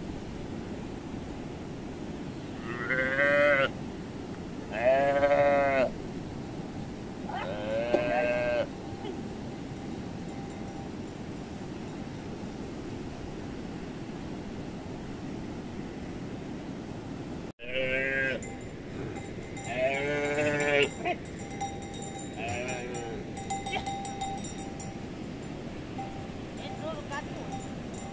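A calf bleating in short, wavering calls, about six in all, in two bunches with a long gap between them.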